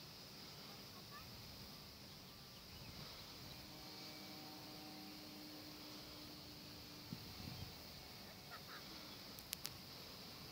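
Faint outdoor background hiss, close to silence, with a faint steady hum for a few seconds in the middle and two sharp clicks near the end.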